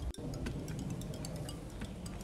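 Outdoor background of scattered faint high-pitched ticks over a steady low rumble. The sound cuts out for an instant just after the start, as the phone switches from its front camera to its rear camera.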